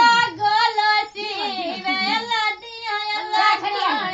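A song's high-pitched voice singing a wavering, ornamented melody with no drumming beneath it.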